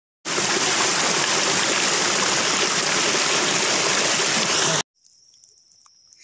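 A small mountain stream splashing down over rocks: a steady wash of running water that cuts off suddenly near the end.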